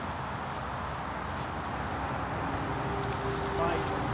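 Steady low outdoor background hum with no distinct impact, and faint distant voices starting near the end.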